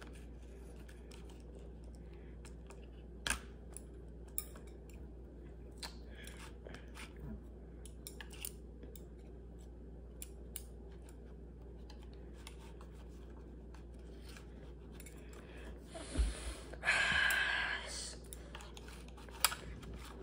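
Plastic chopsticks clicking and scraping against a plastic candy tray as gummy candies stuck in its wells are pried out, light scattered clicks over quiet room tone. A louder rustling scrape lasts about a second and a half near the end.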